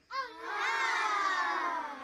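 A single high, drawn-out vocal sound, a wail that rises slightly and then slides slowly down in pitch for well over a second.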